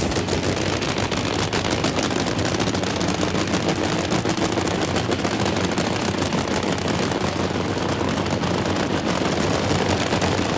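Nitro-burning funny car engines running at the drag strip starting line, a loud, fast, dense crackle that holds steady throughout.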